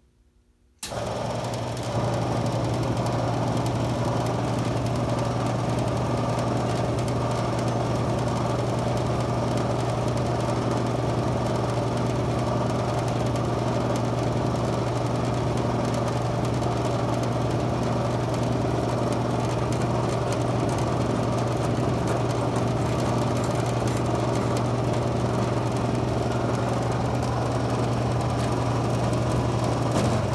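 The brake booster test bench's electric vacuum pump switches on about a second in and then runs steadily with a constant hum, drawing vacuum on an ATE T50/26 power brake booster.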